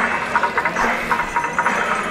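Loud, continuous din of a large outdoor festival crowd, many voices overlapping with scattered clattering.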